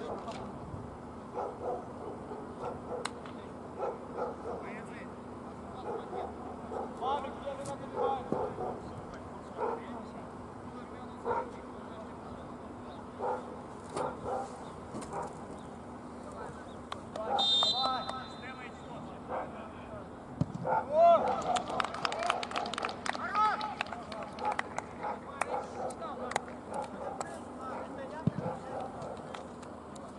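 Outdoor football match sounds: players' scattered short shouts, a short referee's whistle blast about 17 seconds in, then from about 21 seconds a louder burst of players shouting and cheering, typical of a goal being celebrated.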